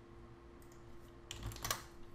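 A quick run of a few computer-keyboard keystrokes about a second and a half in, over a faint steady hum.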